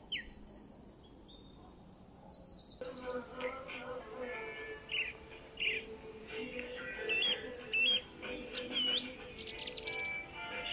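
Birds chirping and trilling in quick falling notes; about three seconds in, soft background music with a steady held note comes in under more chirps and rising whistles.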